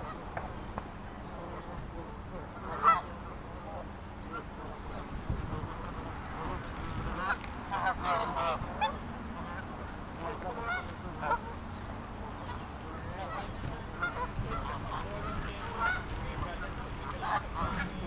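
A flock of Canada geese calling close by: a continual scatter of short honks and calls from many birds, the loudest a sharp honk about three seconds in, with busier bursts of calling around the middle and near the end.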